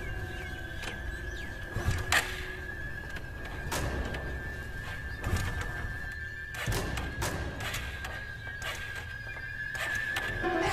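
Background music with a steady high tone and several dull percussive hits spread irregularly through it.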